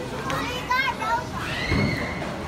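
Young children's voices, high-pitched excited calls and chatter, with a held squeal and a low thump near the end.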